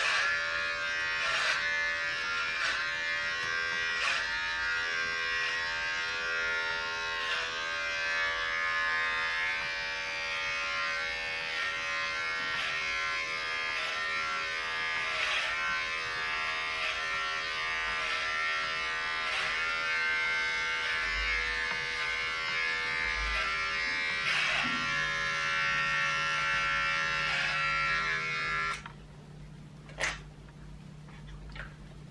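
Corded electric hair clipper buzzing steadily as it is run through the hair, its tone changing briefly with each pass every second or so. It is switched off about a second before the end.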